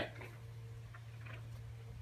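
Quiet room tone: a steady low hum with a few faint, irregular ticks.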